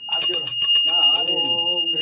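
A small ritual handbell rung rapidly and without a break, giving a steady high ringing. A voice chanting a short repeated mantra joins in under it about a second in.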